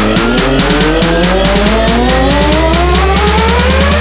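Electronic trap music build-up: a rising synth sweep climbs steadily in pitch over a fast drum roll and a held deep bass.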